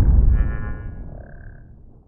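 Cinematic logo-intro sound effect: the deep rumble of a heavy hit fading away over about two seconds, with a faint high shimmering tone partway through.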